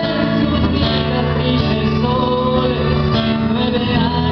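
A man singing a ballad into a microphone while strumming a classical guitar, amplified through PA speakers.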